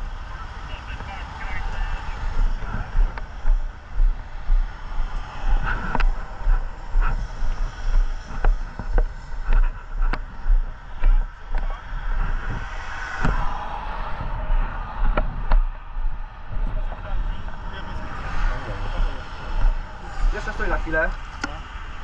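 Low thumps and rumble in a steady rhythm of about one and a half a second, from a body-worn camera jostling with each step of someone walking on the motorway, over a steady hiss of motorway traffic.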